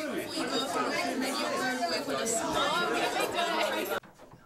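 A room full of teenagers chattering, many voices talking over each other, stopping suddenly at the end.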